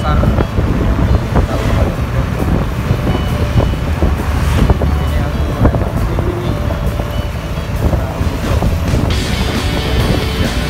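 Wind buffeting the microphone over the steady running of a motorcycle engine on the move, with music playing over it.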